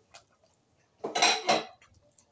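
Metal spoon and fork scraping against a plate of food: two quick scrapes close together, about a second in.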